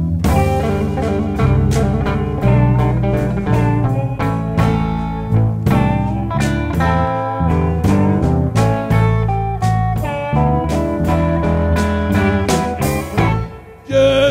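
Chicago blues band playing an instrumental passage: electric guitar and harmonica over electric bass and drums. The band drops back briefly near the end.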